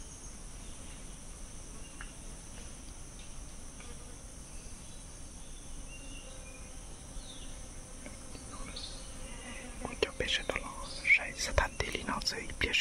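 Steady high-pitched drone of insects. About ten seconds in, a person starts whispering close by, with sharp irregular clicks.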